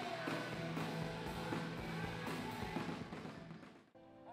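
Live gospel music from a stage: a woman singing into a microphone over a full band with drums. Her held note ends about a quarter second in, the band plays on, and the music fades out just before the end.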